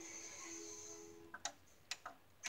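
Faint steady tones that fade out after about a second, then two sharp clicks about half a second apart: buttons being pressed on a CRT television while its on-screen menu setting is raised.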